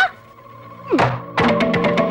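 Comedic film background score: a quick upward sweep, then a held chord. About a second in comes a steep downward swoop, followed by a fast, even run of percussive knocks as the music picks up.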